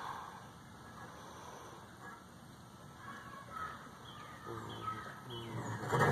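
A bird calling a few times, starting about halfway through, over faint outdoor background.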